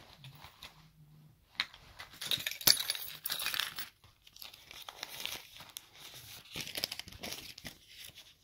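Paper food wrapper crinkling as it is handled, in uneven spells with one sharp crackle a little under three seconds in.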